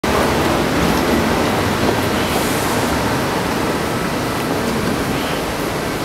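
A steady rushing noise with an uneven low rumble: wind buffeting the camera microphone as the camera is carried along.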